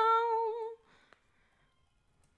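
A woman's voice singing unaccompanied, holding the song's last note with a slight wavering in pitch before it stops under a second in; a faint click follows.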